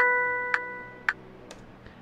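A chord of pitched notes rings out and fades away while a metronome click track ticks about twice a second.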